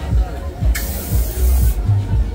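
A burst of loud hissing that starts suddenly about three quarters of a second in and cuts off a second later, over fairground music with a heavy bass beat and crowd chatter.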